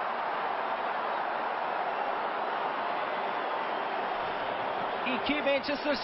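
Steady noise of a football stadium crowd in a TV match broadcast, with a man's commentary voice coming in near the end.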